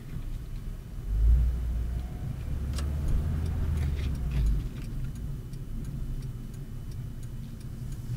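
Car engine and road noise heard from inside the cabin while driving. The engine swells louder for a few seconds about a second in, as under acceleration. Over it runs a steady ticking of about two to three clicks a second, typical of the turn-signal indicator.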